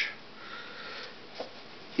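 A short breath drawn in through the nose between spoken lines, with a faint click about a second and a half in.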